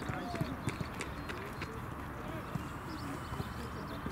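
Training-pitch ambience: faint distant shouting voices and irregular sharp knocks of footballs being struck, over a steady low rumble of wind and background noise.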